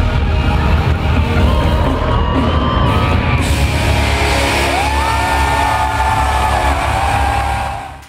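Loud live band music in a concert hall, with crowd whoops and yells over it. The sound cuts off abruptly near the end.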